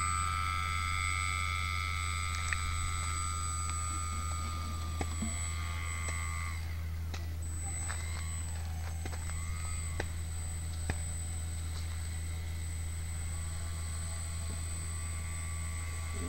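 Electric motor and propeller of a foam RC seaplane whining as the throttle is opened for a takeoff run: the pitch rises, holds steady for about six seconds, then falls away. A short blip follows, and the whine rises again near the end. The model planes along the water without getting airborne, and the thrust seems not to be enough.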